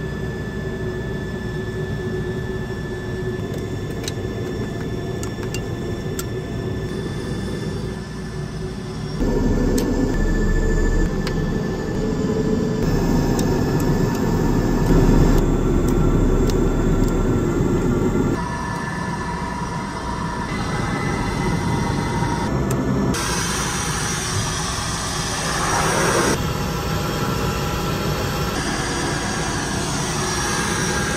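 Pratt & Whitney PT6 turboprop engine running just after start, heard from inside the cockpit: a steady turbine whine over the propeller's drone. The sound shifts abruptly several times, loudest between about 9 and 18 seconds in.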